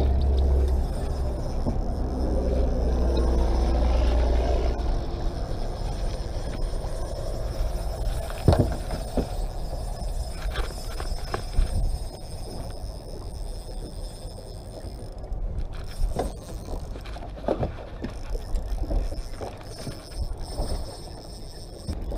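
Knocks and bumps on a small fibreglass boat as someone moves about the deck, a handful of sharp knocks spread through it, over a low rumble that is strongest in the first few seconds.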